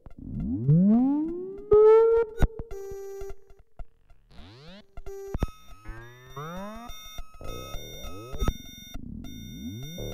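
Experimental electronic music: synthesizer tones sliding upward in pitch and settling into a held note, then short beeps, clicks and more rising glides.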